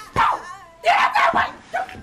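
A person's high-pitched cries and yelps, broken by a few sharp smacks: a child being whooped, heard through a door.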